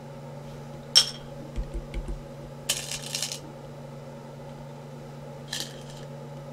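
Go stones clicking as captured white stones are picked off the board and dropped into a bowl lid. A sharp click comes about a second in, then a few light taps, then a rattle of several stones landing together around three seconds in, and one more click near the end.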